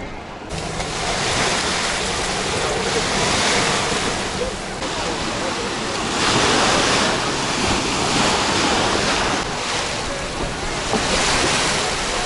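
Small sea waves breaking and washing onto a sand beach, the surf swelling and easing every few seconds.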